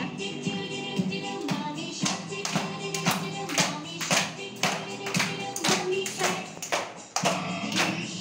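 An upbeat children's action song playing while a group claps along to the beat, about two claps a second, starting about a second and a half in.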